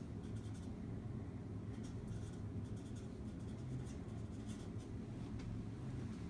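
Felt-tip marker writing on a sheet of flip-chart paper pinned to a wall, in short irregular strokes, over a low steady hum.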